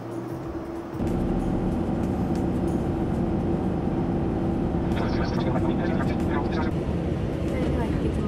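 Steady drone of a Boeing 787 airliner cabin in flight, stepping up louder about a second in, with faint voices in the middle.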